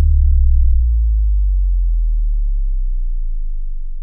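A deep synthesized bass tone that slides slowly down in pitch and gradually fades out: an outro sting under an end card.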